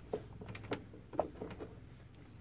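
Small plastic toy makeup compact being handled and opened by hand: a few faint light clicks about half a second apart over soft handling rustle.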